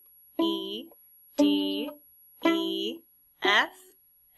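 Violin plucked pizzicato on the D string, four single notes about a second apart (E, D, E, F-sharp), each fading quickly. A woman's voice calls each note's name as it is plucked.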